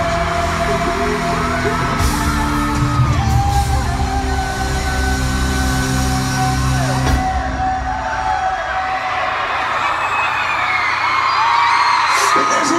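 Live pop music in an arena, heard from among the audience: held keyboard chords over a heavy bass beat, with fans screaming and whooping throughout.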